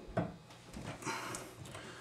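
A faucet is pressed down into plumber's putty on a stainless steel sink: one light knock just after the start, then faint scuffing handling noise.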